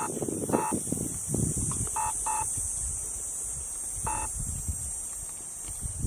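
Short, flat-pitched electronic-sounding beeps, about five of them at irregular intervals, over a steady high hiss.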